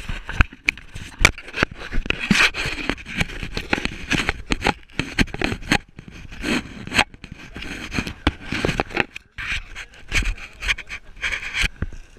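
Close handling noise: clothing and gear rubbing, scraping and knocking against the action camera, a dense irregular run of scrapes and clicks.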